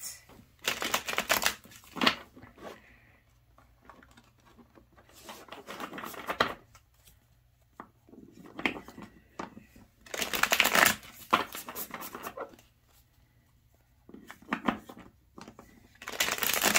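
A deck of tarot cards being shuffled by hand in repeated bursts of a second or so, with short pauses between them.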